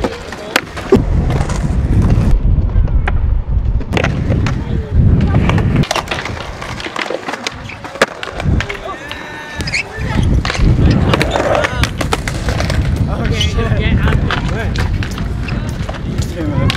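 Skateboard rolling on concrete, its wheels rumbling in long stretches, with a number of sharp clacks of the board hitting the ground.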